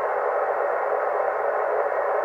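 Bitx40 40-metre SSB transceiver in receive, its speaker giving a steady hiss of band noise with no bass or treble. The receiver is open on an empty frequency in lower sideband, and no station is answering the CQ call.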